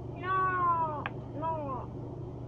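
A cat meowing twice: a long cry that falls in pitch, then a shorter one that rises and falls.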